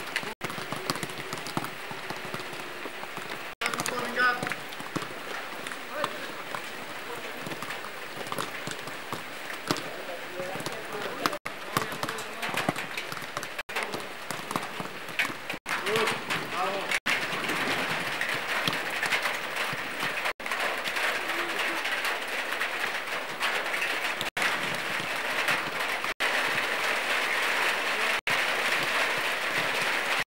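Steady hiss of light rain, growing louder in the second half, with indistinct voices of players calling in the background. The sound drops out briefly several times.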